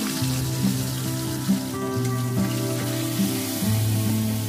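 Background music with held notes changing pitch, over the steady hiss of a pomfret sizzling in hot oil in a steel wok.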